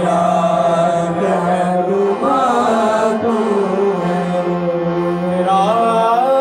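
Men singing a devotional hymn into microphones, accompanied by a harmonium that holds a steady low note under the voices. The voices slide up in pitch near the end.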